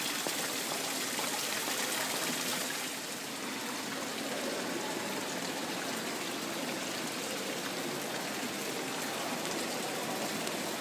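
Water from an ornamental fountain splashing and trickling steadily into a pool, a little softer after about three seconds.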